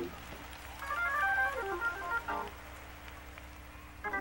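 Quiet organ-style keyboard accompaniment in a pause of preaching: a short run of single notes stepping up and down, from about a second in until the middle, over a steady low held note.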